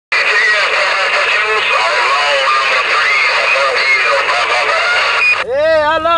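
A man's voice received over a CB radio's speaker on a weak, noisy signal, half buried in steady static hiss. The transmission cuts off suddenly about five and a half seconds in, and a much clearer voice takes over.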